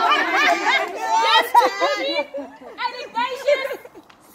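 Several people talking at once in overlapping chatter, busiest in the first two seconds and thinning out after that.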